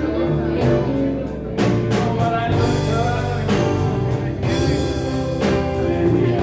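Live blues band playing: electric and acoustic guitars, bass guitar and drum kit, with drum strokes at a steady beat.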